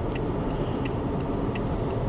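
Car cabin road and engine noise while driving, with the turn-signal indicator clicking about every two-thirds of a second during a right turn.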